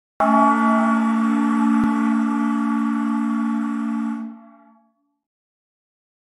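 A short musical sting: one ringing chord-like tone that starts suddenly, holds for about four seconds, then fades away.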